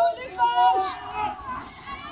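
Children shouting during play: one loud, high-pitched shout about half a second in, with other young voices calling around it.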